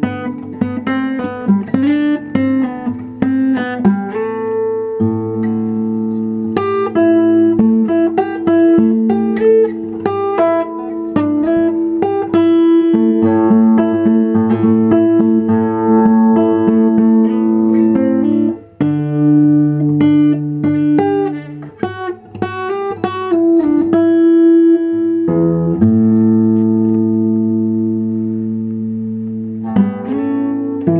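Acoustic guitar played solo: a steady picked pattern of single notes over ringing bass notes, moving through several chord changes. Near the end it eases into fewer, longer-ringing notes.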